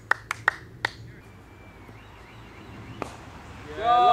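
Sparse hand claps from a spectator applauding good batting: about four sharp claps in the first second, one more near the end, with a quieter lull between. A man's voice starts just before the end.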